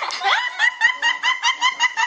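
A teenage boy laughing in a rapid, high-pitched, squeaky run of short bursts, about seven a second.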